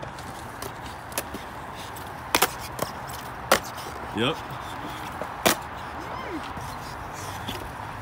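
Skateboard wheels rolling steadily over concrete, with several sharp clacks.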